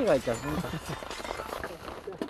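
A man's voice with a swooping, exclaiming pitch right at the start, then fainter background voices and small rustles.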